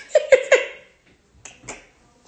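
A woman laughing in short, breathy bursts: three quick sharp bursts about a fifth of a second apart, then two fainter ones.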